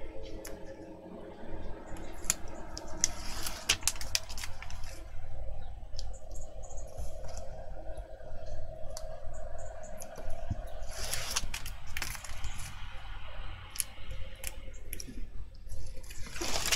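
Small scratches and sharp clicks of a pointed pokey tool picking at the edge of double-sided tape on chipboard to lift its backing, with short papery rustles as the release liner strips peel away, once about three seconds in and again near eleven seconds.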